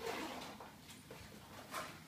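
Fabric rustling and handling noise from a child's backpack being opened and lifted: a swish at the start that fades over half a second, and a second, sharper swish near the end.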